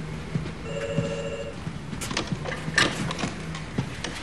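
Office telephone giving one short electronic trilling ring about a second in. It is followed by a few soft knocks, over a low steady hum.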